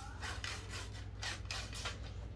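A hand rubbing and sliding along a fishing rod's blank: a run of soft, short brushing strokes.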